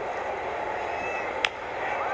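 A wooden baseball bat hitting a pitched ball with a single sharp crack about one and a half seconds in, sending it on the ground, over steady ballpark crowd noise.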